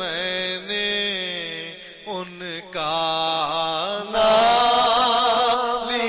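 Male voice singing an Urdu devotional naat in long, ornamented phrases over a steady low drone; about four seconds in, the singing grows louder and fuller.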